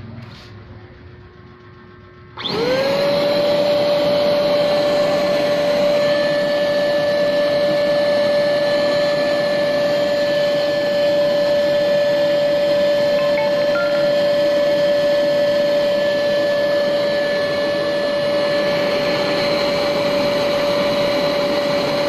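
Ingco 550W paint-sprayer turbine motor, converted to a workshop vacuum, switched on about two and a half seconds in. It spins up within a moment and runs at a steady pitch with a high whine, drawing air through the cyclone dust separator's hoses.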